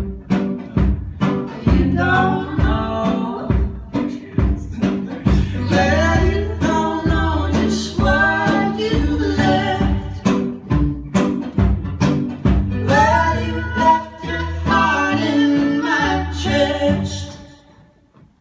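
Live music: an acoustic guitar strummed under singing, the music dropping away just before the end.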